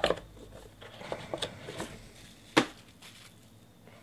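Hands handling a cardboard trading-card box and its cards: small clicks and light rustling, with one sharp knock about two and a half seconds in.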